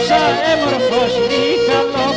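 Pontic lyra (kemençe) playing a quick, ornamented folk melody against a held drone note.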